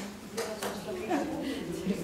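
Indistinct speech: people talking in a room.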